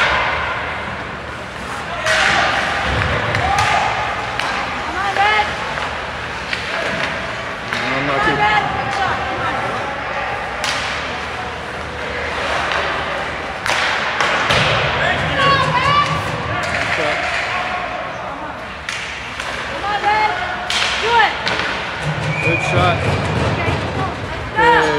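Ice hockey game in a rink: sharp thuds and clacks of puck, sticks and bodies against the boards come every second or two, with shouting voices between them.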